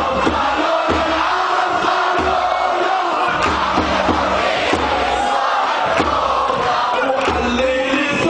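Large crowd of protesters chanting slogans together, loud and steady, over a regular low thump about once or twice a second.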